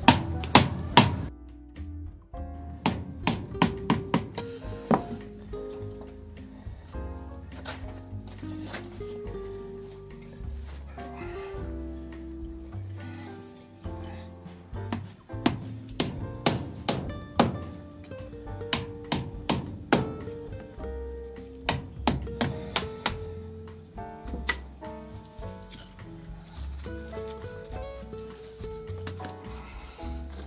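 Irregular sharp knocks of a hammer on a cold chisel, chipping into an old brick chimney, over background music.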